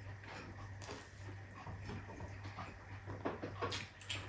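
Close-miked eating sounds: chewing and wet mouth noises from a man eating rice and eggplant omelette by hand, with irregular small clicks. There are a few sharper sounds near the end.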